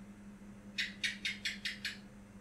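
A quick run of six short, high-pitched chirp-like sounds, about five a second, over a steady low hum.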